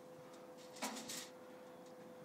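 Aluminium foil over a brew pot crinkling briefly about a second in as it is handled, faint, over a steady low hum.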